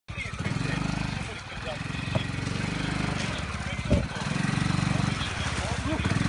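ATV engine revving in repeated surges as the quad bike drives down into a muddy puddle, with a sharp knock about two seconds in and a louder one about four seconds in.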